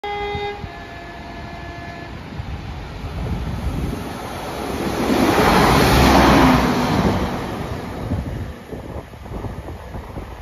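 Transport for Wales Class 197 diesel multiple unit sounding a two-tone horn, two short notes in the first two seconds, the second fainter. The train then passes without stopping, a rush of engine and wheel noise that builds, is loudest about six seconds in as it goes by close, and fades.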